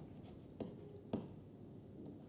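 Faint pen strokes of handwriting on a writing tablet, with two light taps of the pen tip, about half a second and a second in.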